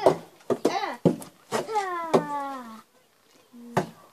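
Repeated sharp thumps of a hanging cardboard box being struck, about six hits. In the middle, a child's voice gives a long, drawn-out cry that slowly falls in pitch.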